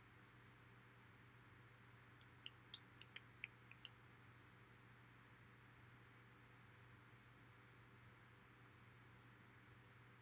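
Near silence: the faint steady hum and hiss of an air conditioner and a fan blowing, with a quick run of about six faint clicks a little over two seconds in.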